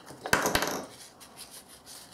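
Paper rustling and rubbing as hands press and smooth a glued paper strip down onto a painting on a tabletop. There is a brief louder rustle with a couple of taps about half a second in, then fainter rubbing.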